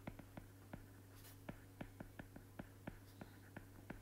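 Faint, irregular clicks of a stylus tip tapping on a tablet's glass screen while words are handwritten, about four a second, over a low steady hum.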